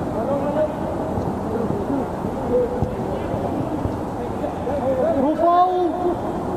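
Distant shouts and calls from players on a football pitch over a steady hiss of outdoor ambience, with a louder, drawn-out shout near the end.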